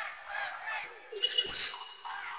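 Field-recording samples from Output Arcade's "Field of Sounds" sampler, "Forestation" preset, played on the keys: a shifting, textural ambience of rustling noise with bird-like chirps and a click about one and a half seconds in.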